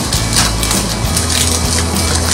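Loose mushroom substrate crunching and rustling inside a polypropylene bag as the bag is pressed and tamped down on a table to compact it, with a few short knocks.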